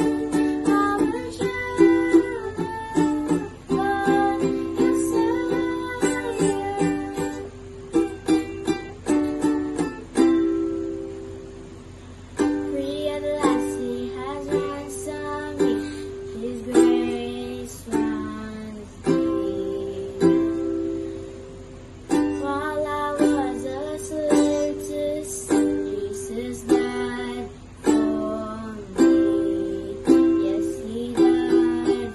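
A child singing while strumming chords on a ukulele, with steady rhythmic strokes.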